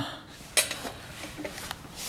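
A few light metallic clinks and taps from loose mower hardware, such as bolts, being handled.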